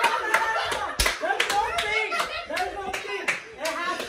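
Several irregular hand claps, the loudest about a second in, over excited voices and laughter.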